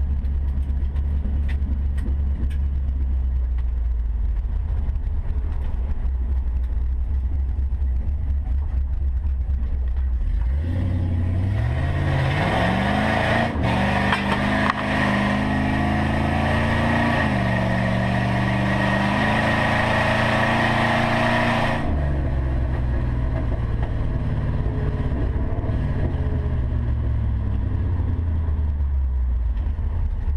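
Jeep Cherokee XJ's 4.8-litre LS V8 heard from inside the cabin, running low and steady. About a third of the way in it pulls hard, its note climbing, dropping at a gear change, then climbing again. About two-thirds through it drops back to a low cruise.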